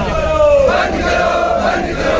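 A large crowd of men shouting protest slogans together, one voice's call falling in pitch about half a second in before the mass of voices joins.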